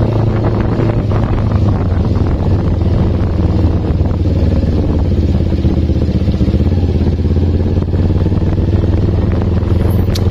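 Kawasaki Ninja 250 carburettor model's parallel-twin engine running at a steady cruise while the bike is ridden, its pitch and level holding even.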